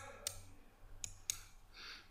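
Faint clicks of a computer mouse: two quick pairs about a second apart, with a soft breath near the end.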